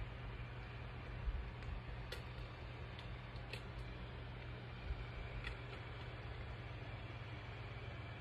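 Quiet room tone with a steady low hum, broken by a few faint, short clicks as lip gloss is dabbed on with its applicator and the lips are pressed together.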